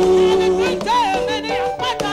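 Gospel music: a lead voice sings wavering, ornamented runs over held accompaniment chords.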